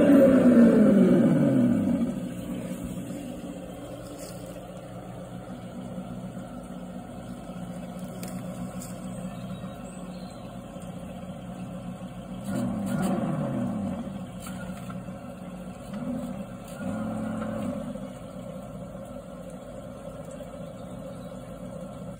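Engine sound from an RC car's hobby-grade sound module, played through its speaker: a loud rev winding down over the first two seconds, then a steady idle. Another rev dies away about halfway through, and two short blips follow a few seconds later.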